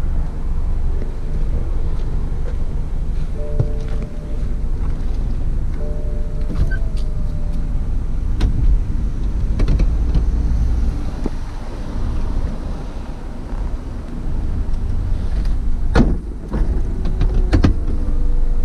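BMW 428i convertible's folding hardtop closing under power: a steady motor hum with clicks and knocks as the roof panels swing over and lock, and the loudest knock about two seconds before the end.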